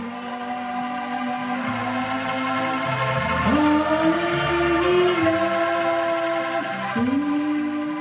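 A woman singing long held notes through a microphone, accompanied by a group of bamboo angklung shaken in chords. Her voice slides up to a higher note about three and a half seconds in, dips, and slides up again near the end.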